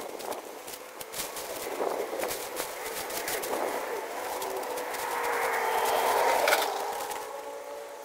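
Clear plastic sheeting crinkling and rustling in sharp crackles as it is pulled and tucked over garden plants. A steady drone comes in about halfway through, loudest near the end.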